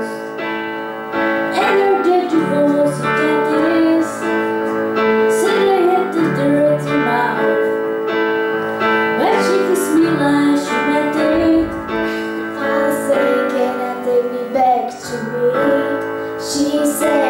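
Two girls singing a pop song into amplified microphones over an instrumental accompaniment with sustained chords. The older girl sings alone at first, and the younger girl joins in near the end.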